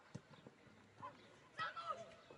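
Faint sounds of an outdoor football match: a single dull thud just after the start, typical of a ball being kicked, and distant shouts of players near the end.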